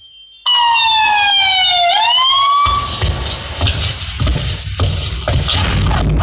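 Siren sound effect in the dance music played over the PA. The music breaks off for a moment, then one siren tone falls and rises back over about two seconds. The beat of the dance track comes back in about halfway through.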